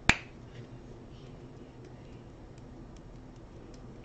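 A single sharp click, then a few faint scattered ticks as a small plastic pot of Brusho watercolour crystals is handled and tapped to sprinkle the powder onto wet paper.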